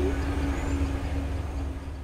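Low rumble of an express passenger train's coaches running on the rails, slowly fading as the train moves away.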